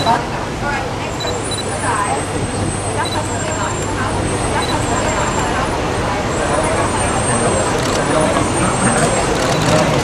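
Indistinct talking and crowd chatter over a steady low rumble.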